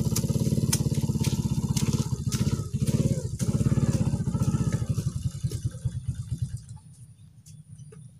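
Small motorcycle engine running with a rapid low putter, dropping away about six and a half seconds in. Sharp clicks sound over it now and then.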